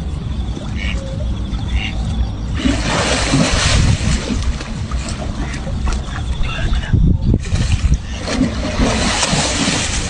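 Water splashing as a tiger wades and lunges through a pool. There are two bursts, one about three seconds in and another near the end, over a steady low rumble.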